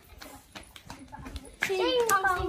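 Children's footsteps running across a dirt yard, a string of light, uneven taps and scuffs. About a second and a half in, a child lets out a loud, high-pitched shout.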